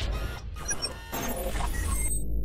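Electronic logo-intro sound effects: a steady low bass drone under scattered short, high-pitched glitchy blips and noisy whooshing sweeps.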